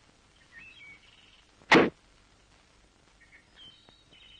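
A car door slams shut once, sharp and loud, a little under two seconds in. The car is a Hindustan Ambassador. Faint high bird chirps come before and after it.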